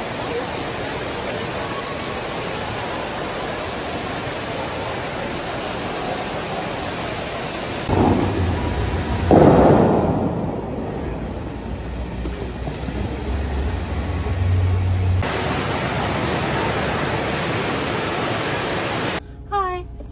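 A steady rushing noise, then about eight seconds in a louder, deeper surge of water as the Bellagio fountain jets shoot up and spray, easing back over the following seconds.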